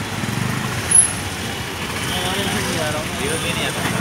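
Street noise with a large vehicle's engine running. There is a brief sharp sound about a second in, and people's voices in the background in the second half.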